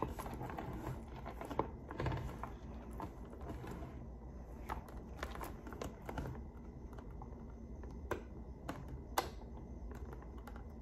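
Irregular small clicks and taps of plastic visor clips and a screw being handled and fitted onto a football helmet's facemask, with a few sharper clicks near the end.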